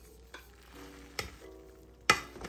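Plastic rice paddle stirring freshly cooked rice in a rice cooker's inner pot, quiet, with a couple of soft knocks against the pot.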